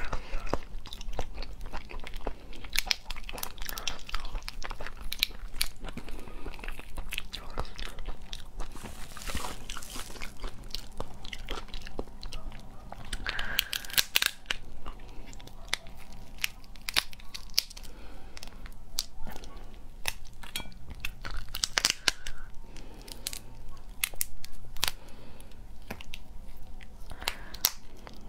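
Raw spiny lobster being eaten: shell crackling as pieces are picked and pulled off by hand, with biting and chewing of the tender raw meat. Many sharp clicks and crackles, coming in irregular clusters.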